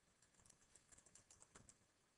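Faint typing on a computer keyboard: quick, irregular key clicks as a short phrase is typed.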